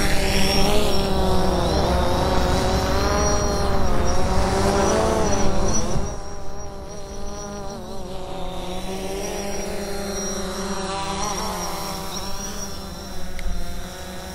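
Small quadcopter drone's motors whirring, the pitch wavering up and down as it manoeuvres. It is louder for about the first six seconds, then drops to a softer whir.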